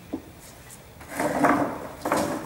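Whiteboard marker on the board: a short tap near the start, then a loud scraping stroke of almost a second in the second half as a letter is written.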